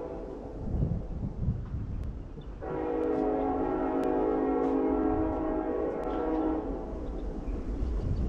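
Train horn sounding one long held blast, a chord of several steady tones, starting suddenly about two and a half seconds in and lasting about four seconds before it fades.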